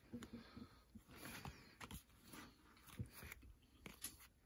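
Faint soft rustles and clicks of a stack of paper baseball trading cards being fanned through by hand.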